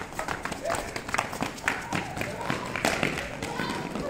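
Several children running in sandals and flip-flops on a hard marble floor: quick, irregular footstep slaps, with children's voices calling out.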